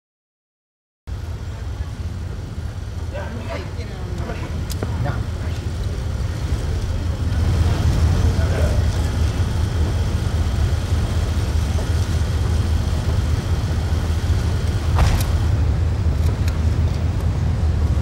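Outdoor ambience dominated by a steady low rumble, like a vehicle running close by, with scattered voices. It starts suddenly about a second in, grows louder around seven seconds in, and has a single sharp click near the end.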